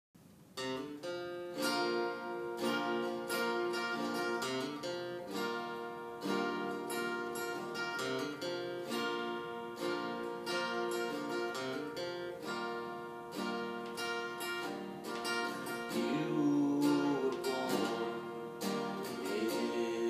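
Instrumental intro of a ballad on acoustic guitar, chords strummed at a steady, unhurried pace, starting about half a second in.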